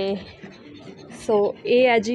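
Short bursts of a person's voice: the tail of a drawn-out call at the start, then two brief vocal sounds in the second half.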